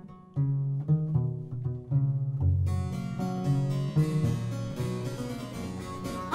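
Violone and harpsichord playing the instrumental opening of an early-Baroque song. The violone bows a low bass line, and the harpsichord grows fuller and brighter about two and a half seconds in.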